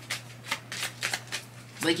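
A tarot deck being shuffled by hand: a quick, irregular run of card clicks and snaps.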